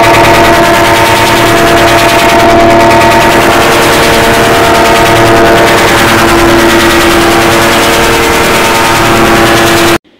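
Heavily distorted, clipped audio-effect rendering of a held shout, turned into a very loud, harsh, fast-rattling buzz with a few steady tones running through it. It cuts off suddenly at the end.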